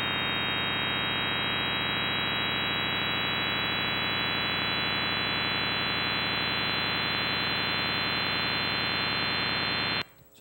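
Computer-generated sonification of Riemann's zeta function along the critical line (the Riemann–Siegel Z function, time-compressed): a steady, buzzing, shrieking tone made of many close-packed pitches, its highest pitch creeping very slowly upward like a siren. It cuts off suddenly at the end.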